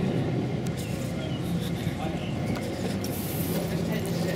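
Street background: a steady low mechanical hum with faint voices mixed in.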